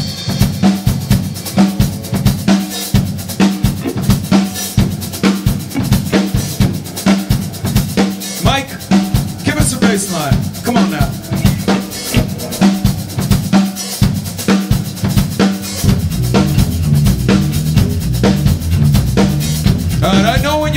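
Live drum kit playing a steady groove on kick and snare to open the song. About sixteen seconds in the low end fills out as a bass part joins.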